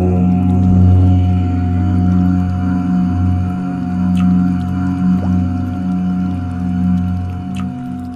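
A deep voice chanting "Om" in long, sustained low notes over ambient meditation music, with a brief dip about three and a half seconds in before the next Om. Two faint clicks come through, one near the middle and one near the end.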